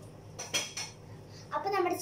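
Steel kitchenware clinking: a couple of quick metal strikes with a short ring, about half a second in.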